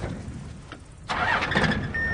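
A vehicle engine starting about a second in and running on.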